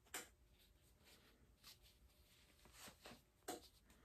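Near silence with a few faint, brief handling sounds as a flip-flop strap is pulled and worked out of the sole.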